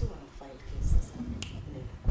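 A person speaking in low, broken talk, with one sharp click about one and a half seconds in.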